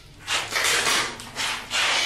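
A person hushing others with a hissed "shh", several pulses in a row.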